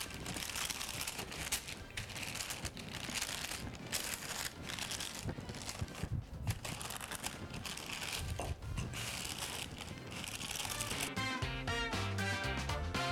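Parchment paper crinkling and rustling as a wooden rolling pin rolls pastry dough out between two sheets. Music comes in about a second before the end.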